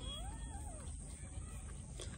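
A newborn puppy's single faint cry, rising and then falling in pitch over most of a second.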